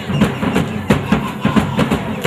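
Percussion for a traditional dance performance: drums and stamping feet keep a fast, even beat of about three strikes a second.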